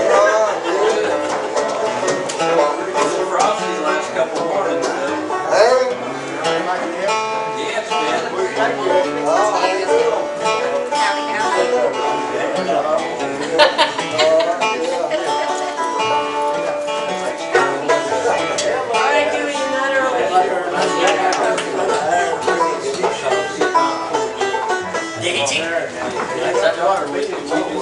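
Old-time string band jam playing a tune, led by a five-string banjo with guitar and upright bass backing.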